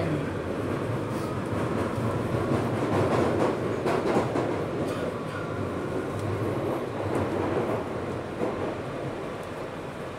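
London Underground Victoria line train running through a tunnel, heard from inside the carriage: a steady rumble and rattle of wheels on the track, getting a little quieter towards the end.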